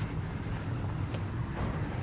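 Outdoor street background: a steady low rumble with no distinct events.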